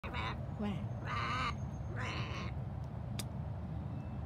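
A bird giving three short, harsh calls about a second apart, over a steady low rumble.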